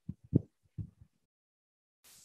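A few soft, low thuds picked up on an open video-call microphone, the loudest about a third of a second in, then quiet for the last second.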